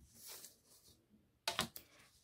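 A plastic ruler scraping faintly across a sheet of paper, then a few sharp taps about one and a half seconds in as it is put down in a new position.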